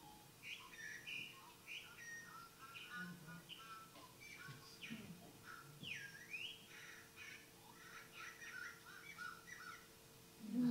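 Recorded song of a male bobolink, slowed to one-third speed, played faintly through a room speaker: a jumble of many short notes and quick pitch glides, one sharp down-and-up swoop about six seconds in, over a steady low hum.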